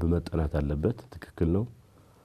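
Speech only: a man talking in a studio, with a short pause near the end.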